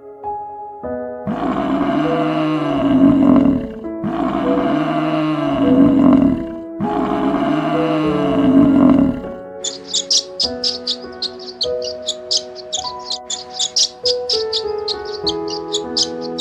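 Three long, loud bellows from a buffalo, each about two and a half seconds, rising then falling in pitch, over soft piano music. From about ten seconds in, the bellows give way to rapid, high twittering of a barn swallow over the music.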